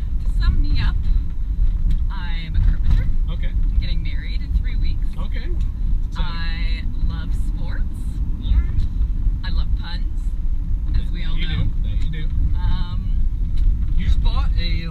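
Steady low drone of engine and road noise heard inside the cab of a moving truck.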